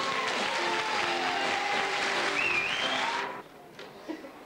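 Audience applauding over music from a stage show. It cuts off abruptly about three seconds in.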